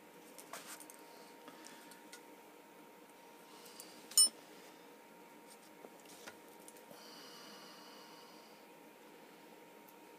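Small steel parts handled on a workbench while pivot pins are fitted into a steel tool block: a few light clicks, then about four seconds in one sharp metallic click with a brief ring.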